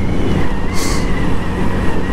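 A 2012 Yamaha XJ6's 600 cc inline-four engine running steadily at cruising speed, heard from the rider's seat with road and wind noise and a steady high whine. A brief hiss comes a little under a second in.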